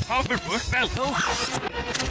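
Animated-cartoon dialogue played backwards: several voice fragments, reversed and unintelligible.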